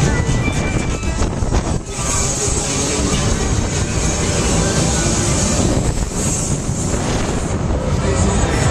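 Wind rushing over the microphone of a rider on a Technical Park Loop Fighter thrill ride as it swings and turns over, with loud fairground music going on underneath.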